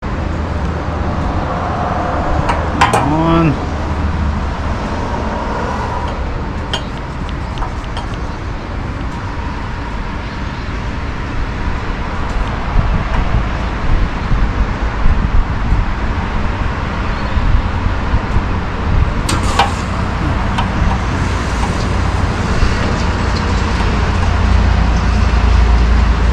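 Motorcycle on the move heard from the bike: a steady rumble of engine and wind, with road traffic around it. A short falling engine note comes about three seconds in.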